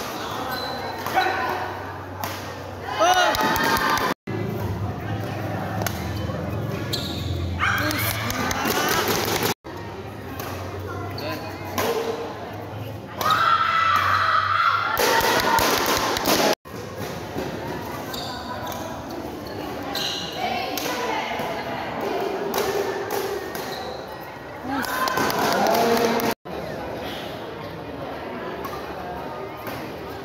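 Badminton doubles rally in a large hall: repeated sharp racket hits on the shuttlecock and thuds of footwork, with shouts and voices from players and spectators. The sound cuts off abruptly four times at edits.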